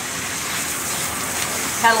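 Water spraying steadily from a handheld bath sprayer onto a cat's wet fur and splashing into a stainless-steel grooming tub as the shampoo is rinsed out.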